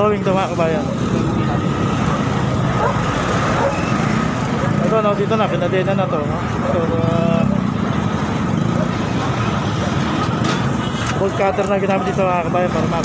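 Busy street noise: a steady hum of vehicle traffic and running engines, with voices talking in short bursts now and then.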